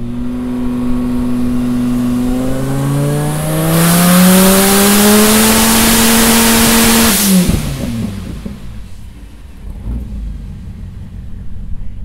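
Twin-turbo Dodge Viper V10 running on a hub dyno under load. The revs climb, then hold steady at their loudest for about three seconds with a heavy rushing hiss over the engine note. About seven seconds in the throttle shuts and the revs drop away to a low running note.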